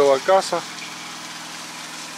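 Small petrol engine of a plate compactor running steadily with a low, even hum during road works.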